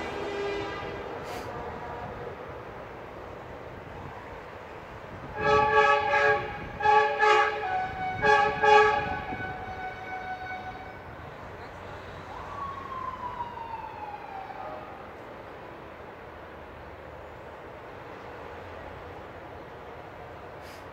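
Truck air horns sounding a series of about five short, loud chord blasts in the middle, over passing traffic. A single tone slides downward in pitch a few seconds later.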